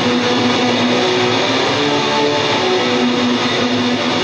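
Punk band playing live: a loud, distorted electric guitar riff of held notes.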